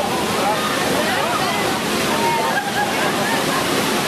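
Steady rush of falling water from a lit water curtain, with many voices chattering over it.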